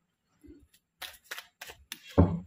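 A deck of tarot cards being shuffled by hand, the cards snapping against each other in short clicks about three times a second over the second half.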